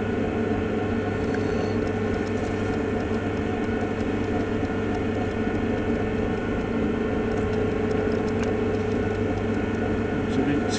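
Potter's wheel motor running with a steady, even hum while wet earthenware clay spins on the wheel head.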